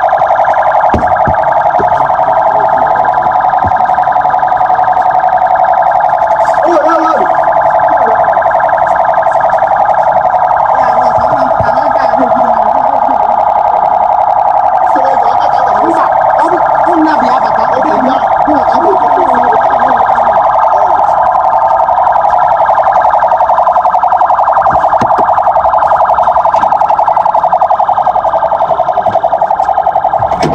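A loud, steady alarm-like buzzing tone that continues without a break, with voices faintly underneath in the middle stretch.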